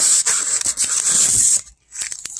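Plastic wrapping and packing material rustling and rubbing as a hand handles a plastic-wrapped battery in a cardboard box. The rustling stops about one and a half seconds in, leaving a few light clicks.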